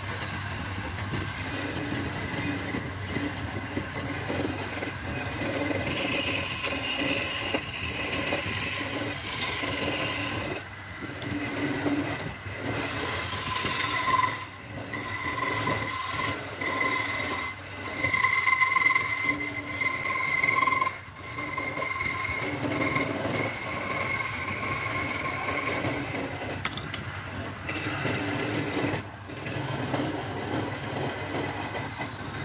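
Wood lathe spinning a hardwood spindle while a flat steel scraper cuts into it, with a steady low motor hum under the cutting noise. Through the middle a high whine comes and goes in stretches as the tool works the wood.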